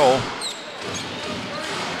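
Basketball game sounds in an arena: a steady murmur of crowd noise with the ball bouncing on the hardwood court.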